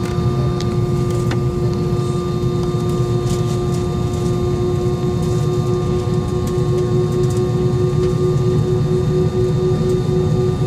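Airbus A320's IAE V2500 engines at idle thrust, heard inside the cabin while the aircraft taxis: a steady low rumble under a constant whine.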